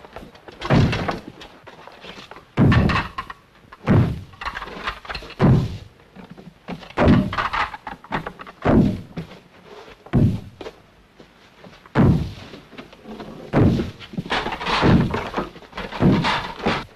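A heavy wooden door being battered, about ten loud thuds roughly a second and a half apart, as soldiers ram it together.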